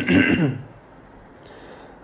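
A man briefly clears his throat, then only a faint steady hiss remains.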